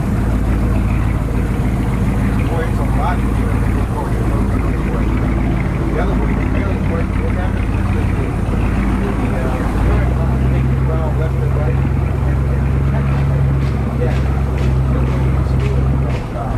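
Engine of a wooden cabin cruiser running steadily under way, a low droning hum; about ten seconds in its note changes to a stronger, deeper drone.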